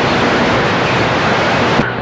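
Cobra 29 LX CB radio receiving on channel 22 between transmissions: a steady, loud hiss of band static. Near the end the hiss thins as an incoming station keys up.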